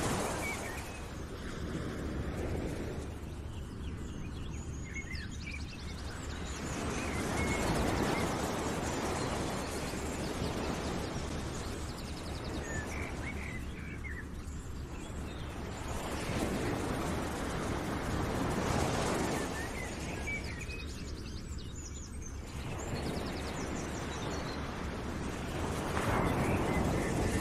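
Outdoor nature ambience: a wide rushing noise that swells and fades every several seconds, with scattered short bird chirps.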